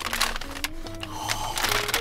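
Paper fast-food bag rustling and crinkling as it is held open, over soft background music with sustained notes.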